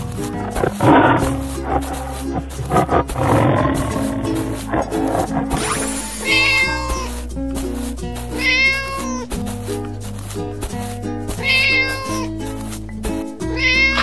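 Cartoon cat meows over cheerful children's background music, four short meows spaced a few seconds apart from about six seconds in. Rougher growl-like animal sounds come in the first few seconds.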